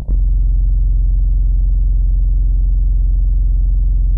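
Synthesizer drone in live electronic music: one loud, low sustained tone with a stack of overtones, cutting in abruptly and then holding perfectly steady.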